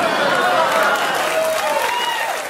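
Studio audience applauding and laughing in response to a comedian's punchline.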